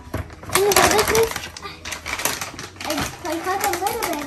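Kitchen scissors snipping through a plastic bag of frozen breaded chicken patties, with the bag's plastic crinkling and rustling, loudest about a second in. A child's wordless voice sounds twice over it.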